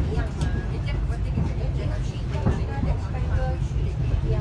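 Steady low rumble of a moving passenger train, heard from inside the coach, with people talking over it.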